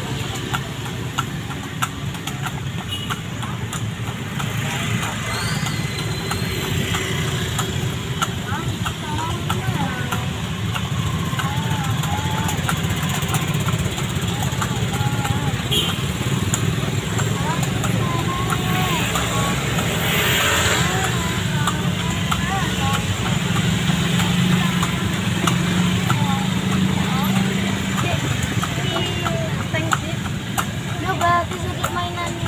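Busy street traffic: motorcycle engines running close by in a steady low hum, with background voices and scattered light clicks.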